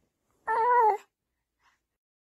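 An infant's single short vocalization, a pitched coo or squeal lasting just over half a second, starting about half a second in.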